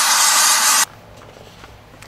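Pneumatic vacuum gun with a cloth collection bag hissing loudly as it sucks wood chips off a CNC router bed, cutting off sharply just under a second in.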